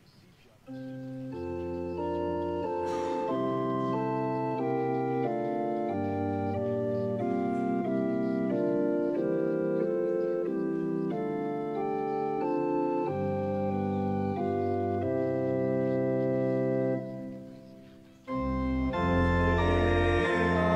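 Church organ playing the introduction to a hymn in slow, sustained chords that change about once a second. The chords fade out near the end and, after a short gap, the organ comes back in louder as the first verse begins.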